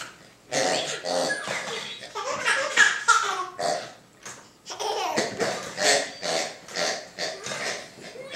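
A toddler laughing in repeated bursts, with a short pause about four seconds in.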